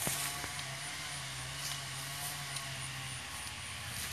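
An engine running steadily, heard as a low hum with a few light clicks over it; the hum drops away about three seconds in.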